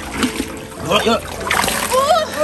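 Water splashing as a long-handled landing net is swept through shallow, murky channel water and lifted out dripping.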